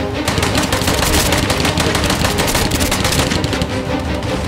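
Rapid automatic rifle fire, a dense string of shots that eases off near the end, over dramatic background music.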